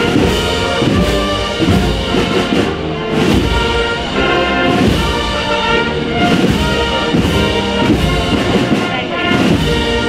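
Spanish banda de música, a brass and wind band, playing steadily with the brass leading.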